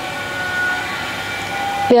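Construction work outside, heard through the room: a steady mechanical din with a faint high whine.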